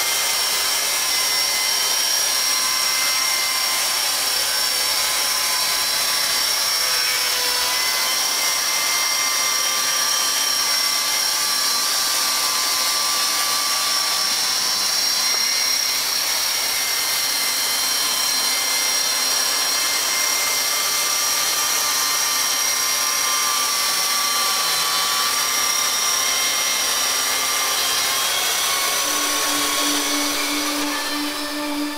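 Electric-motor-driven chain sawmill cutting lengthwise through a log, a loud, steady run with a high-pitched whine. The chain's cutting tips are badly ground, so it makes dust instead of chips.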